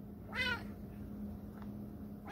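A domestic cat meows once, a short call that rises and falls in pitch about half a second in, asking for a treat held above it.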